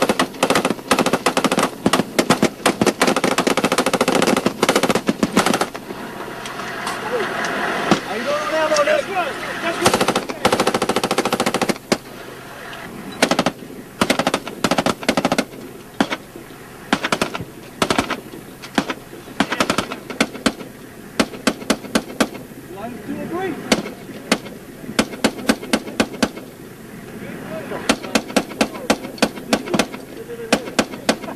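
Gunfire from M16-type rifles and machine guns. Shots come in rapid succession for the first several seconds, then scatter, and a fresh run of rapid shots begins near the end.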